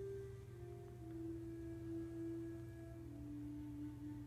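Soft ambient background music: pure, sustained tones stepping slowly between a few low notes, over a steady low hum.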